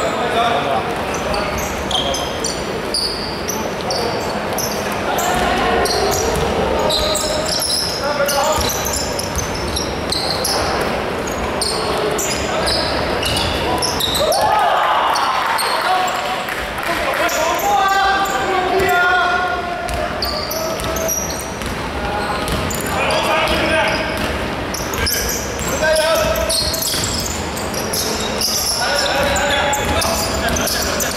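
Basketball game on a hardwood court in a large hall: the ball bouncing, shoes squeaking, and players calling out to each other, all echoing around the hall.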